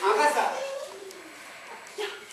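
A person's brief wordless vocal sound in the first half second, then a quieter stretch with only faint voice.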